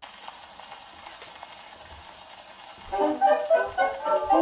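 Acoustic Orthophonic Victrola playing a Victor 78 rpm shellac record: the needle drops into the lead-in groove with surface hiss and faint crackle, and about three seconds in a dance orchestra starts playing a fox trot.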